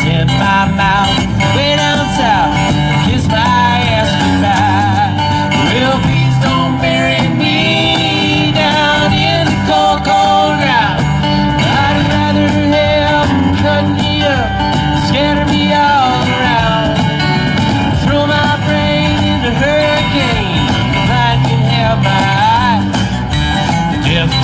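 Live acoustic country-folk band playing: strummed acoustic guitars, upright bass and cajón, with a melody line over them, in a passage with no sung lyrics between verses.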